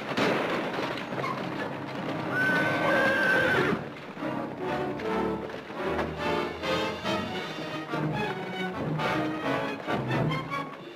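A horse whinnies over a rushing noise in the first few seconds, and orchestral music takes over from about four seconds in.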